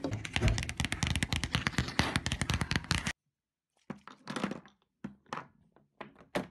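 Fingertips and nails tapping rapidly on a wooden tabletop, a dense run of quick clicks that cuts off suddenly about three seconds in. After a brief silence, a few separate soft taps follow.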